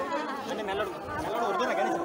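Several people talking at once, overlapping voices with no single clear speaker.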